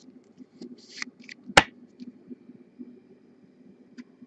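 Hands handling trading cards and a clear plastic card holder: small plastic clicks and rustling, a brief scrape about a second in, and one sharp click a little over a second and a half in, the loudest sound.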